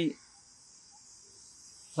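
A pause in a man's speech, filled only by a faint, steady high-pitched hiss.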